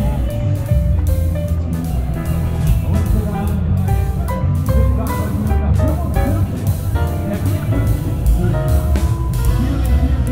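Music with guitar and drums over a heavy bass line, playing continuously.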